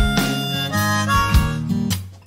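Recorded blues music: a harmonica playing over acoustic guitar.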